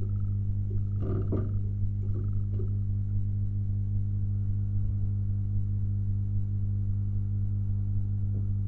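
Steady low electrical hum with evenly spaced overtones, unchanging throughout, with a brief softer sound about a second in.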